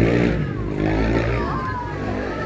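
A small motor-vehicle engine running steadily under people's voices, loudest at the start and easing off.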